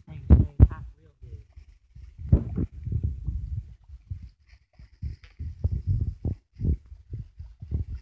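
Liquid glugging out of a plastic jug as it is poured into a pot over a fire, in irregular low gurgles several times a second.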